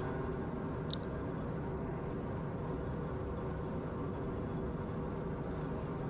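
MacLean underground rock bolter running steadily in gear with the park brake released, a constant even machine hum heard from the operator's cab, with a short faint high tone about a second in.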